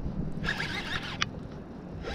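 Shimano 150HG baitcasting reel being cranked with a fish on the line: a wavering mechanical whir for about a second in the middle, ending with a sharp click.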